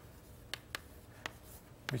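Chalk writing on a chalkboard: four short, sharp taps of the chalk striking the board as symbols are written.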